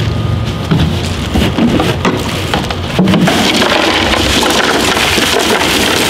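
Bagged ice cubes poured into a plastic cooler, a dense clattering rattle of cubes tumbling onto bottled drinks and the cooler's walls, growing busier about halfway through.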